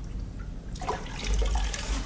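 Water splashing and trickling in a washbasin as a man washes himself, over a low steady hum.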